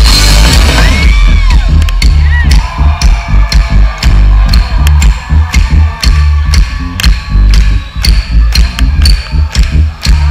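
Live concert music over a festival stage's sound system, loud, with heavy bass and a steady beat of about two drum hits a second.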